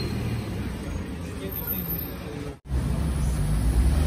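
Street traffic: a flatbed tow truck's engine running as it pulls away. After a sudden break a little over halfway through, a car drives past with a stronger low rumble.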